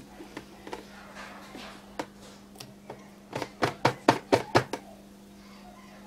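Domestic sewing machine doing a short burst of slow free-motion stitching a little past the middle, about eight needle clicks in quick succession, over a steady low hum.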